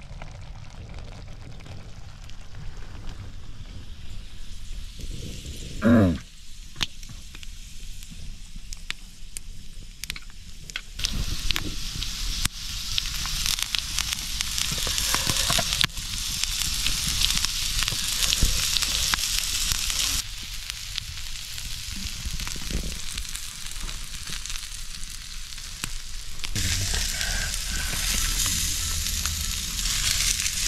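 Meat sizzling on a hot stone slab over a wood fire: a steady hiss with scattered crackles, louder from about ten seconds in. Before that it is quieter, with one short, loud rising sound about six seconds in.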